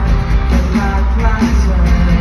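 Live pop song played loud over an arena's sound system, with a heavy bass and a voice singing the melody.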